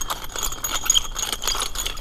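Garden Weasel cultivator's spiked steel tine wheels rolled back and forth over lawn turf to break up the soil, the tines rattling and clinking in many quick, irregular clicks.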